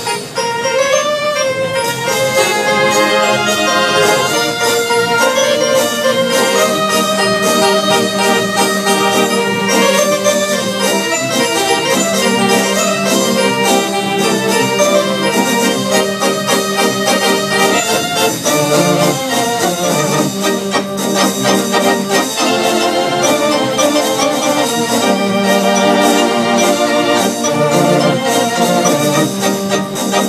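Theatre-style electronic organ played live through its speaker cabinets: held chords under a moving melody, with a steady beat.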